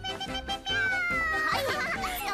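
Anime background music with a girl's voice calling 'meow, meow' in imitation of a cat. A long falling tone comes about halfway through.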